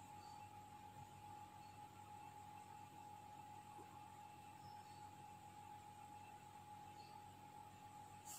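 Near silence: faint room tone with a thin, steady whine.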